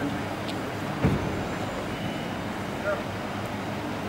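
Street background noise with vehicle sound, and a low thump about a second in.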